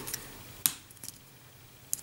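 Plastic connector of a cardboard X-Wing maneuver dial snapping into place: one sharp click about two-thirds of a second in, followed by a few faint ticks of handling. A small clip sound like this usually means the connector is seating properly.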